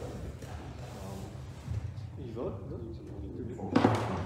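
Faint, distant speech echoing in a large hall, with a brief, sharp noise near the end.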